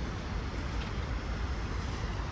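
Steady low rumble of city traffic, with no distinct single event.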